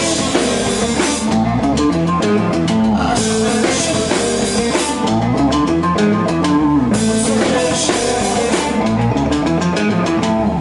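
Live indie rock band playing: electric guitar, bass guitar and drum kit in a steady, loud passage with a moving guitar line and constant cymbal wash.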